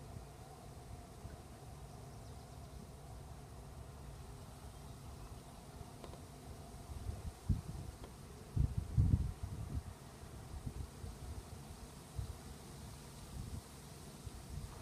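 Wind rumbling on the microphone outdoors, steady and low, with a few stronger gusts about halfway through.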